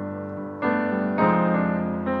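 Slow piano playing sustained chords, with a new chord struck just after a second in and another about a second and a half in: the quiet piano introduction to a ballad.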